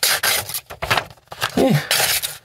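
A dull pocket-knife edge dragged through a sheet of paper, the paper rasping and tearing in several uneven scratchy strokes instead of slicing cleanly: the edge is far from razor sharp.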